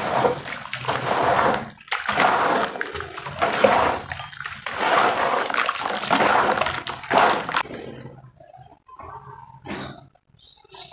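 Hands sloshing and swirling thick muddy water in a plastic tub, in repeated loud swishing surges. The sloshing stops about seven and a half seconds in, leaving only small, quiet splashes.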